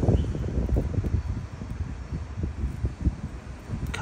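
Wind buffeting the microphone outdoors: an uneven low rumble that rises and falls, with no distinct events.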